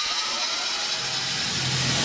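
Electronic dance music build-up: a slowly rising synth sweep over a hissing wash, with deep bass notes coming in about halfway through, just before the drop.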